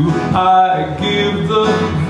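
A man singing with acoustic guitar accompaniment, holding notes between lyric lines.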